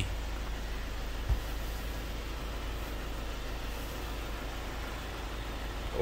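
Steady low rumble and hiss with a single low thump about a second in.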